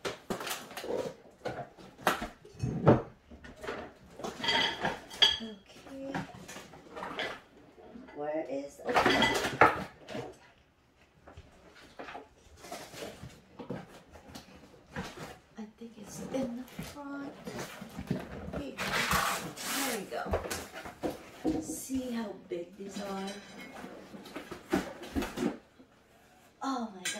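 Cardboard box and paper packaging being handled and opened: rustling, scraping and knocking, with louder rustles about 4, 9 and 19 seconds in. A heavy enameled cast-iron pot lid is lifted out near the end.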